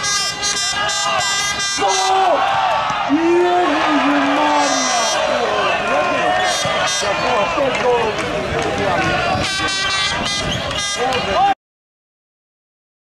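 Football spectators shouting, with repeated blasts of air horns over the voices. The sound cuts off suddenly near the end.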